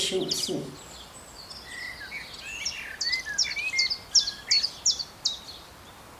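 Birds chirping and singing, ending in a run of short, sharp, high notes, several a second, in the second half.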